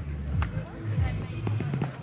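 Background voices of several people talking, with faint music and a few sharp clicks, the clearest about half a second in.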